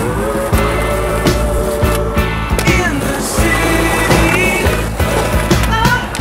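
Music playing, mixed with a skateboard rolling on concrete, with sharp clacks from the board popping and landing.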